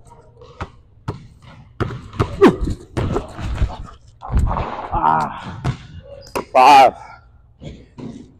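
Basketball dribbled on a hardwood gym floor: a quick, uneven run of sharp bounces in the first half.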